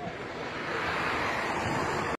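A rushing noise that swells about half a second in and then holds steady.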